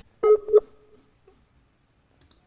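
Two short electronic telephone beeps, a steady two-pitch tone with a brief trailing note, about a quarter second in. These are call-progress tones from a redial that is not getting through because the studio's internet connection has dropped.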